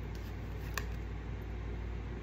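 Steady low room hum, with one short click about three-quarters of a second in as tarot cards are handled and a card is drawn from the deck.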